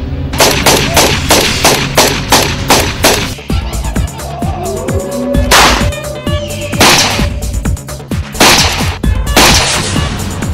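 Gunfire in a film shootout: a rapid volley of about ten shots in the first three seconds, then four heavier single shots about a second or more apart in the second half, over background music.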